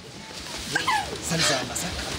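Agitated, distressed human voices crying out and speaking over one another in a scuffle, with whimpering, wailing tones.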